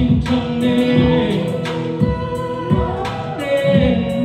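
Two men singing a song together into microphones over amplified backing music, with long held notes.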